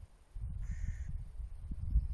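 A single short bird call, about half a second long, a little over half a second in, over a low rumble of wind on the microphone.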